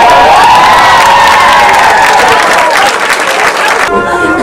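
Audience of young girls cheering and clapping, with one high voice rising into a long held cheer of about three seconds over the clapping.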